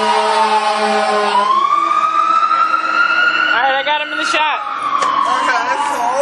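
Emergency vehicle siren wailing: one pitched tone slides slowly down, climbs again from about a second in, then falls once more. Voices cut in briefly over it about four seconds in.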